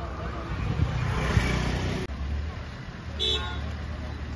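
Road traffic noise from a passing motor vehicle, rising over the first two seconds. Then a single short vehicle horn toot about three seconds in.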